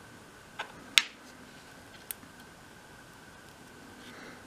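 A few light clicks and taps of metal tweezers handling tiny dolls-house miniatures, the sharpest about a second in, over quiet room tone with a faint steady high tone.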